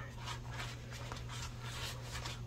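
Soft rustling of paper dollar bills being handled and flipped through by hand, a series of faint short rustles.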